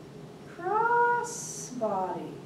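A woman's wordless vocal sound: a tone that rises in pitch and holds, a short breathy hiss, then a falling glide near the end.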